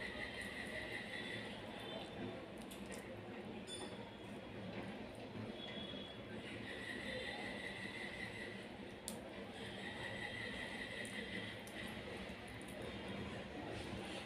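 Faint squishing and tearing of boiled chicken drumstick meat being pulled off the bone by hand, with a few light ticks. Under it is a low steady background with a faint high tone that comes and goes three times.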